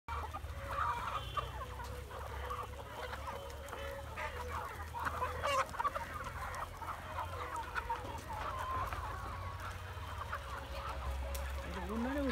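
A flock of chickens clucking, many short calls overlapping without a break.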